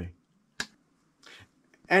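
A single sharp click about half a second in, then a short, soft intake of breath before speech resumes.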